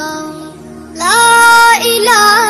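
High-pitched voice singing a Bengali Islamic gojol (devotional song): softer for the first second, then a loud note that slides up and is held for most of a second, over a steady low tone.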